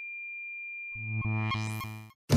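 A single thin high tone held steady, joined about a second in by a synthesizer keyboard chord with notes repeated about four times a second, which cuts off suddenly at the end.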